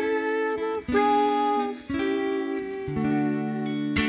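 Clean electric guitar, a Fender Stratocaster, playing four ringing chords about one a second: a short chromatic chord move that echoes the song's chromatic vocal melody.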